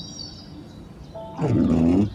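Windshield wiper blade dragging across the wet windscreen close to the microphone: a loud rubbing sweep near the end, its pitch dipping and rising, over soft background music.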